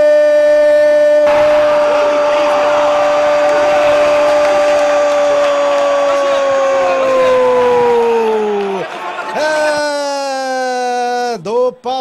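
A Brazilian TV commentator's drawn-out 'Gooool!' shout: one voice holds a single note for about nine seconds, then falls in pitch as it runs out of breath, over crowd noise. Near the end he goes back to rapid excited commentary.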